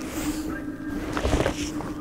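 A lightweight fabric cabin suitcase being lifted and handled close to the microphone: rustling, with a few short knocks about a second and a half in.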